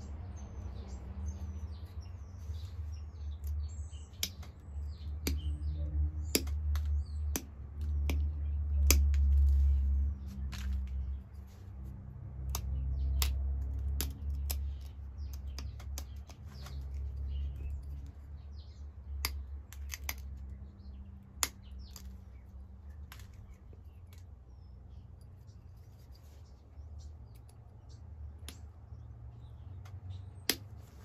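Pressure flaking a Flint Ridge flint point to thin its base: sharp, irregular clicks, each a small flake popping off under an antler pressure flaker. A low rumble swells and fades under the clicks, and birds chirp faintly in the first few seconds.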